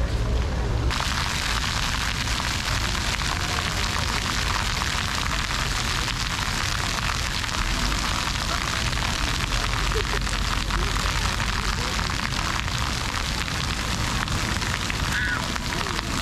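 Arching fountain jets spraying and splashing down onto wet paving in a steady hiss that starts abruptly about a second in.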